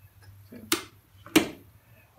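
Two sharp plastic clicks about two-thirds of a second apart: a solar inverter's AC isolator switch being switched off and its hinged plastic cover snapping shut.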